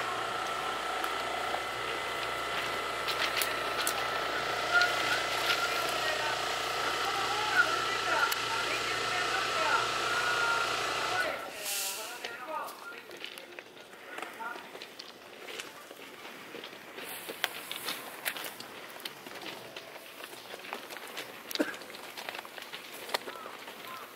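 Stationary Keikyu 1890-series electric train giving a steady electrical whine over a low hum, with people talking around it. About eleven seconds in the hum stops suddenly, leaving quieter open-air background with scattered light clicks and faint voices.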